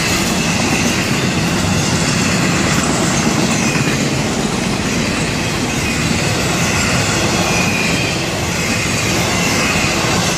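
Container flatcars of a Florida East Coast Railway intermodal freight train rolling past close by: a steady, loud rumble and rattle of steel wheels on the rails, with a thin high wheel squeal over it.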